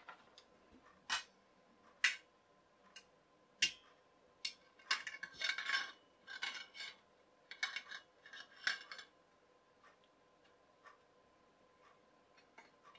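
Chrome wire shelf clinking and scraping against a chrome tension pole as it is slid onto it. There are a few separate sharp clinks over the first four seconds, then a busier run of rattling and scraping from about five to nine seconds.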